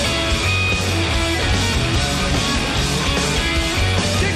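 Live glam-rock band playing loud and steady: electric guitar over bass guitar and drums, with no vocals.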